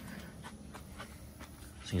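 Quiet pause: low background hiss with a few faint, light clicks.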